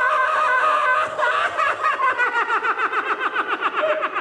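A performer's voice holding a high, steady cry, which breaks about a second in into a long, fast cackling laugh made of many short pulses, each falling in pitch.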